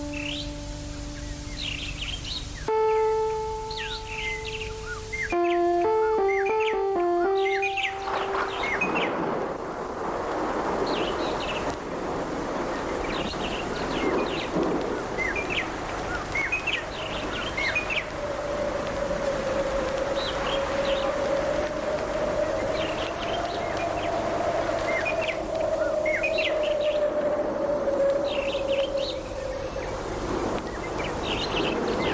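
Held instrumental notes and then a quick run of alternating notes. After about eight seconds these give way to many birds chirping over an outdoor hiss. In the second half a long, slowly wavering held tone sounds beneath the birdsong.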